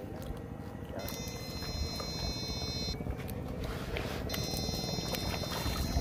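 Battery-powered electrofishing shocker giving off a high-pitched electronic whine in two bursts of about two seconds, roughly three seconds apart, as the current is switched on, over a steady low rumble.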